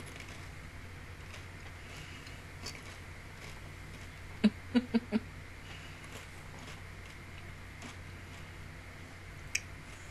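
Quiet room tone with a steady low hum. About halfway through comes a person's brief stifled chuckle of four quick pitched bursts, and there is a single faint click near the end.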